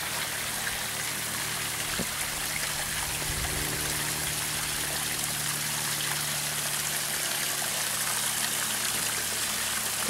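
Small rock waterfall in a backyard pond: water trickling and splashing steadily over the stones into the pond.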